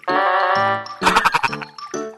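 Cartoon sound effects over music: a wavering, bleat-like creature cry in the first second, then a quick run of sharp clicks as the pterosaur snaps at the pufferfish.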